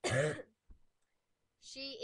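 A person clears their throat once, a short burst about half a second long at the very start; speech begins near the end.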